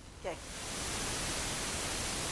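A steady, even hiss of background noise that fades in about half a second in and then holds level, after a brief spoken 'okay' at the start.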